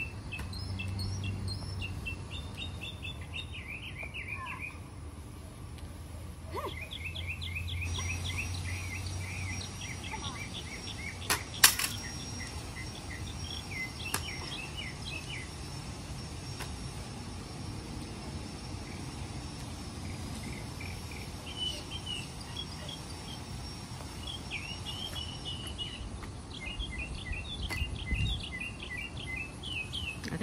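Songbirds chirping in repeated quick trills, with a steady thin high tone through the middle. A few sharp knocks of an axe striking a tree trunk, the loudest about a third of the way in.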